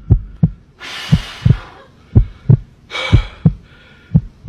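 Heartbeat sound effect: pairs of low thumps about once a second. A breathy hiss comes about a second in and again near three seconds.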